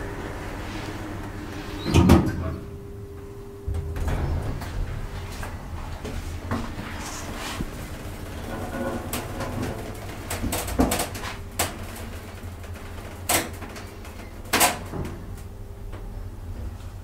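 Hydraulic elevator car running with a steady hum, a loud thud about two seconds in, and a series of sharp clunks and clicks in the second half as the doors work.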